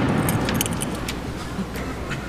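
Light metallic jingling and clinking, a scatter of sharp high clicks, over a congregation's murmur that fades during the first half.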